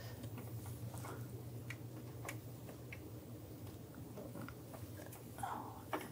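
Faint handling noise: a few light clicks and rustles from a gloved hand holding a new plastic MAP sensor as it is brought to its bore in the intake manifold, over a steady low hum.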